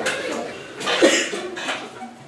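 A person coughing in a small room, the loudest cough about a second in.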